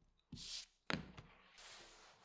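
Faint handling at a leathercraft bench: a short scraping swish, then a sharp tap like a knife set down on a cutting mat about a second in, and a soft rustle as the trimmed filler strip is moved onto the belt.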